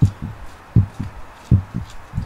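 Heartbeat sound effect on a film soundtrack: a low double thump, lub-dub, three times, about one beat every three-quarters of a second.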